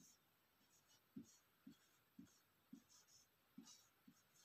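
Faint marker strokes on a whiteboard: short squeaks and scratches, about two a second, as a word is written out by hand.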